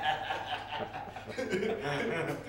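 A man chuckling and laughing amid speech.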